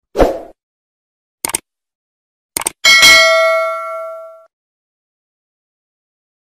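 Subscribe-button animation sound effects: a short thump, two clicks, then a bright bell-like ding that rings out for about a second and a half.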